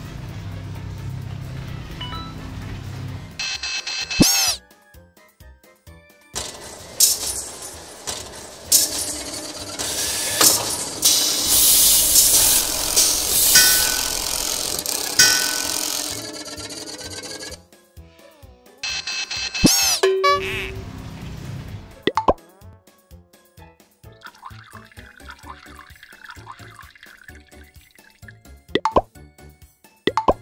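Cartoon car-wash sound effects over children's background music: two quick swooping glides, and a long loud hiss of spraying foam in the middle.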